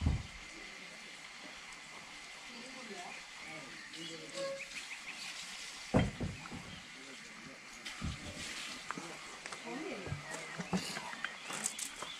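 Quiet rural yard background with faint distant voices and a few short high chirps. Two sharp knocks stand out, one at the very start and one about six seconds in.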